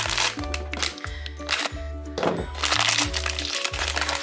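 Foil blind bag crinkling and crackling as it is handled and opened, over background music with a repeating bass line.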